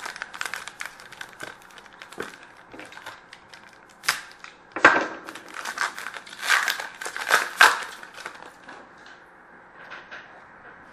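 Trading card pack wrappers being torn open and crinkled by hand, with the crackle of cards being handled. It comes in irregular clusters and is loudest about halfway through.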